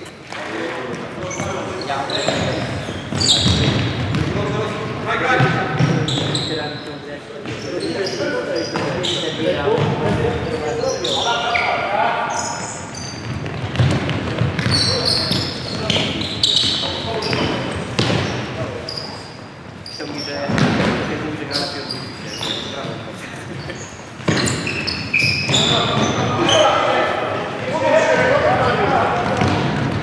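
Indoor futsal play: the ball being kicked and bouncing on a wooden court, with short high shoe squeaks and indistinct shouts from players, all echoing in a large hall.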